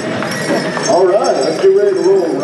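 People talking and laughing close by, with a light jingling of small metal bells on dancers' regalia as they step.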